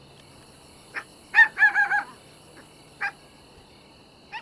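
A chicken calling over a steady high drone of insects: a short note about a second in, then a louder call running into a quick string of four repeated notes, and one more short note about three seconds in.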